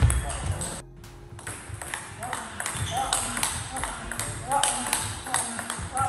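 Table tennis ball being hit back and forth in a fast training rally: quick sharp clicks of ball on bat and table, breaking off briefly about a second in.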